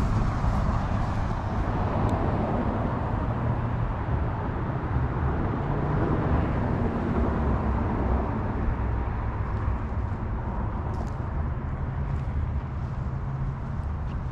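Steady road traffic noise, a continuous low rumble and hiss with no distinct events.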